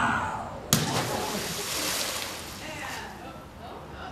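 A thrown carved pumpkin smacking into river water about a second in, then a splash of spray that fades over a couple of seconds.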